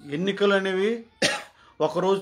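A man speaking in Telugu, broken by a single short cough about a second in before he carries on talking.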